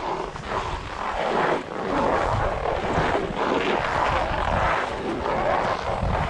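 Skis sliding over packed snow, a steady rough hiss that rises and falls in level, with wind buffeting the microphone.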